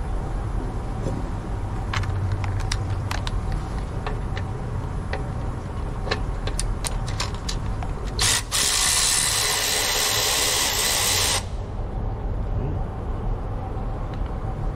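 Light metallic clicks and taps of a hand wrench loosening coolant-line fittings on a diesel engine, over a steady low hum. A little past the middle a loud, even hiss sounds for about three seconds and cuts off sharply.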